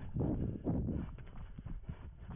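A runner's footsteps thudding and crunching over dry leaf litter and sticks, with the runner's breathing, heard from a head-mounted camera.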